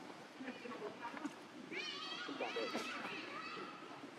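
Background human voices, high-pitched chatter like children playing, loudest from about two seconds in to near the end.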